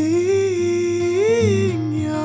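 A man's wordless singing or humming, one long held note that swells upward about a second and a half in and slides back down, over sustained acoustic guitar.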